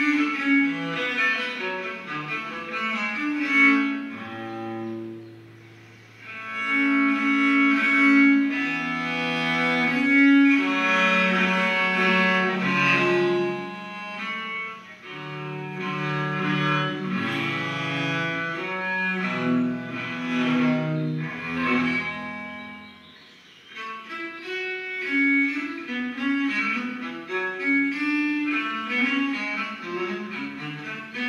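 Solo bass viola da gamba bowed, playing a flowing melodic line mixed with chords. The playing eases to softer notes briefly about six seconds in and again a little after twenty seconds.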